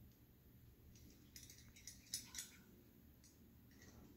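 Near-silent room tone with a few faint light clicks from handling, bunched between about one and a half and two and a half seconds in.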